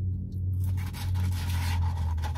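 Chewing French fries and rustling the paper fry carton while reaching into it, heard from about half a second in, over a steady low hum.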